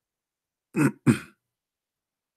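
A man clears his throat with two short bursts about a second in. All else is silent.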